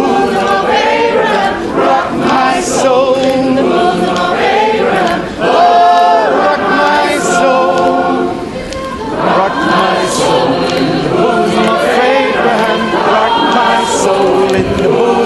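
Gospel choir singing together in sung phrases, with a brief quieter moment a little past the middle.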